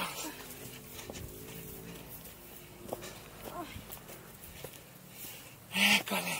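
Hikers' non-word vocal sounds while climbing a steep dirt trail: a held, hum-like voice early on, short breathy sounds through the middle, and a loud short vocal burst near the end.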